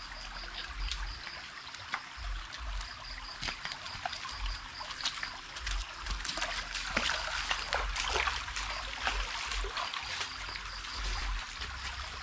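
Shallow creek water trickling and splashing, with scattered small splashes and squelches from bare feet wading through the water and mud. Gusts of wind rumble on the microphone.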